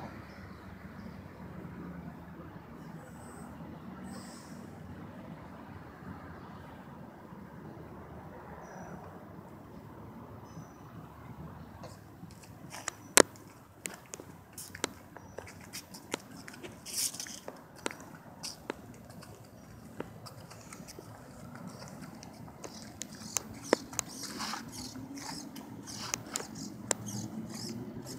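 Radio-controlled model floatplane's motor and propeller running at taxi speed on the water, a faint hum that rises in pitch over the last few seconds. From about halfway on, scattered sharp clicks and knocks.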